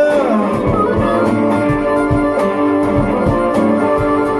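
Live acoustic blues played by a small band in an instrumental gap between sung lines: acoustic guitar with harmonica holding long notes over a steady drum beat.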